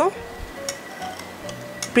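Soft background music with held notes, and a few faint ticks of a knife blade against a glass bowl as it cuts down through set gelatin.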